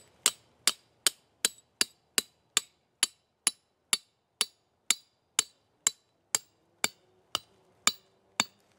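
Hammer striking the top of an 18-inch steel rebar stake in a steady run of about twenty sharp, ringing metal-on-metal blows, a little over two a second, slowing slightly near the end, as the stake is driven into the ground to anchor a trap.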